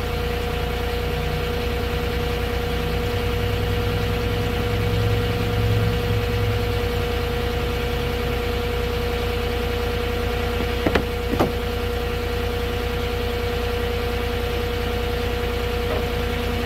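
Moffett truck-mounted forklift's diesel engine idling steadily, with a constant thin tone over it and two brief clicks about eleven seconds in.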